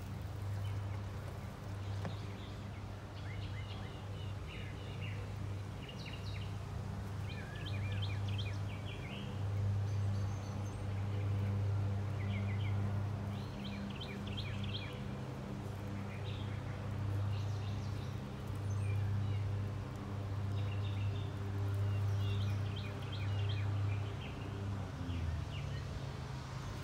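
Birds chirping in short, rapid trilled bursts over a steady low hum that swells and fades every couple of seconds.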